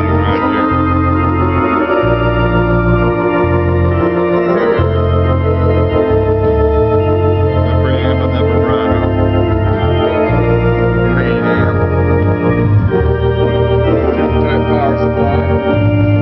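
Hammond tonewheel organ playing held chords over a bass line whose notes change about once a second.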